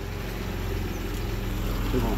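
Steady low mechanical hum of a running motor, growing slightly louder toward the end.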